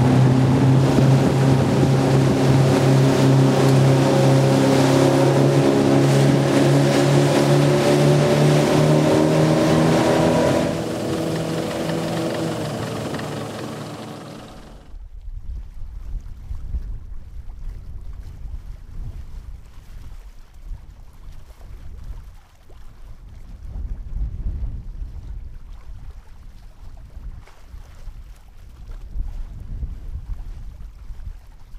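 Engine of an inflatable rescue boat running at speed, with a steady note over the rush of water and wind. About ten seconds in the engine sound drops and fades away over a few seconds, leaving only a low wind rumble on the microphone.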